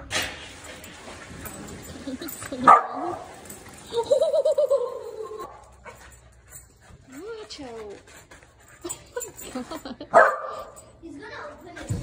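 Corgi barking sharply, once about three seconds in and again near the end, with a longer whining call and short rising-and-falling yips in between.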